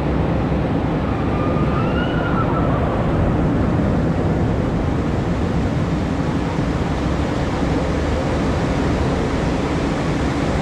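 Steady rushing noise with a heavy rumble underneath, and a faint short whistle-like tone that rises and falls about two seconds in.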